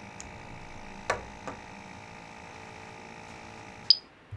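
Small plastic clicks and handling noise as the end caps are pressed back onto a zero carbon filter cartridge, with one sharper click about a second in and a softer one just after, over a faint steady hum.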